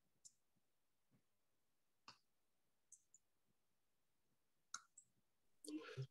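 Near silence broken by about six faint, scattered clicks from a computer mouse and keyboard.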